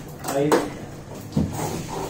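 A man says a single short word, then a dull knock comes a little under a second and a half in, over a low steady hum.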